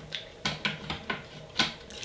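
Folding laptop stand clicking through its angle notches as it is lowered with a glass 3D-printer build plate on it: a few short, irregular clicks.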